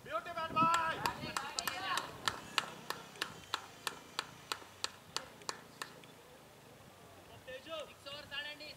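One person clapping hands in a steady run of about three claps a second, slowing and fading out over about five seconds. Voices call out at the start and again near the end.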